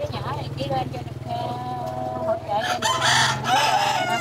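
A rooster crowing once, a call of about a second that comes near the end and is the loudest sound, over a steady low hum.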